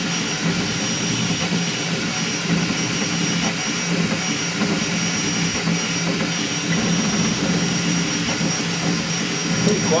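Crossed-gantry 3D printer moving its toolhead at high speed (300–400 mm/s, 20–45k acceleration): stepper motors and belts whining and buzzing in quickly shifting pitches as the head darts back and forth. A thin steady high tone runs underneath.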